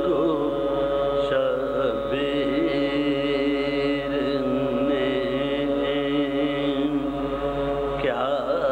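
Sozkhwani, a chanted Urdu elegy: a voice sings a slow wavering melodic line over a steady held drone.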